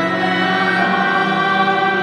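A small choir singing sacred music in long, held chords, accompanied by violin.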